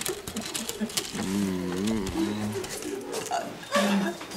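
A person's voice drawing out a long, wavering low note for about a second and a half, starting about a second in, among many short clicks and handling noises.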